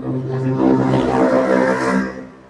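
A vehicle engine running at a steady speed, with a pronounced droning hum, for about two seconds before cutting off abruptly.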